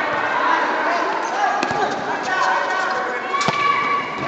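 A volleyball struck by hands during a rally: a few sharp smacks, the loudest about three and a half seconds in, over overlapping shouts and chatter from players and spectators.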